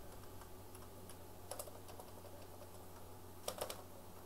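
Computer keyboard typing: a few faint, scattered keystrokes, with a brief run of louder clicks about halfway through and again near the end, as a function name is deleted and retyped. A low steady hum runs underneath.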